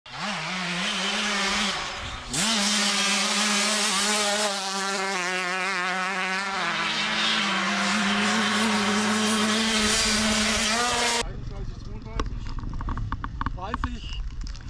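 A dirt-bike engine revved up twice in quick succession, then held at high revs in a steady, even note for about nine seconds before cutting off suddenly. After the cut comes outdoor sound with scattered clicks and knocks.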